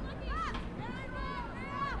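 Faint, distant high-pitched voices calling out a few times across the field, over a low steady background hum of the stadium crowd.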